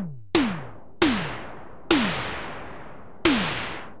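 Synthesized analog-style tom-tom from the Tom Tom module of Reason's Kong Drum Designer, struck four times. Each hit is a tone that drops steeply in pitch, with a noise tail that fades out. The tail grows longer from hit to hit as the module's Noise Decay is turned up.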